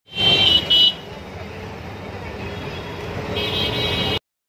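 A vehicle horn honks twice in quick succession, then traffic and engine rumble runs steadily with another, longer horn sounding near the end, heard from inside a vehicle on the road.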